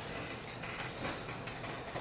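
Felt-tip marker writing on transparency film: a run of short scratchy strokes over a steady low hum.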